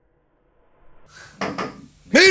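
Two short, sharp knocks about a fifth of a second apart, a little past the middle, over faint low room noise.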